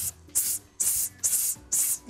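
Short, sharp hissing exhalations pushed out in a fast, even rhythm, about five in two seconds: a vocal coach pumping her diaphragm in a breath-support exercise for singers.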